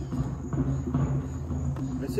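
A drum circle of hand drums beating steadily in the background, with deep, continuous, overlapping drum strokes.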